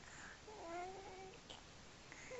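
A four-month-old baby's drawn-out coo: one wavering vocal sound about a second long.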